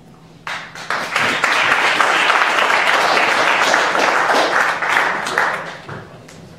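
Audience applauding: the clapping starts about half a second in, swells within a second, holds steady, then dies away near the end.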